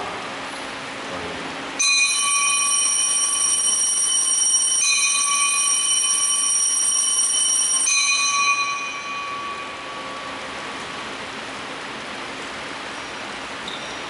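Altar bells rung at the elevation of the host after the words of consecration. There are three rings of about three seconds each, every one a cluster of bright high tones starting sharply, and the last fades out about two-thirds of the way through.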